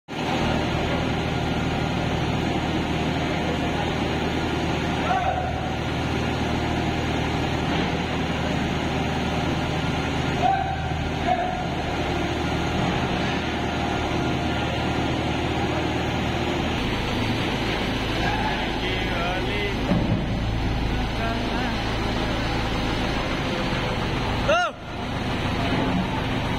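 Heavy tunnelling machinery, a hydraulic rock-drilling jumbo, running loud and steady. The low hum shifts about two-thirds of the way through, and the sound drops out briefly near the end.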